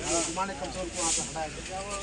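Men's voices talking indistinctly, with a short hiss recurring about once a second.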